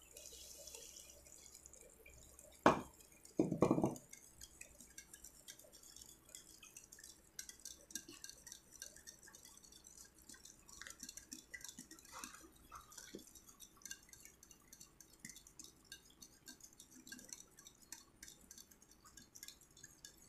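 Wire whisk stirring sugar into egg and butter batter in a ceramic bowl: faint, continuous small clinks and wet ticks of the whisk against the bowl. About three seconds in there is a single sharp knock, then a short louder clatter.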